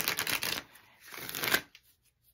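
A tarot deck being shuffled by hand in two quick bursts of rustling cards, the second stopping just before the end.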